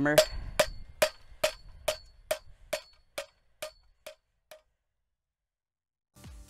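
Rubber mallet striking a metal hand-auger bucket about twice a second, each blow with a short metallic ring, to knock stiff clay out of the bucket. About ten blows, getting steadily fainter until they stop about four and a half seconds in.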